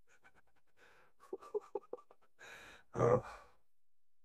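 Faint human breath sounds: a few soft clicks, then a short breathy hiss and a louder sigh-like breath about three seconds in.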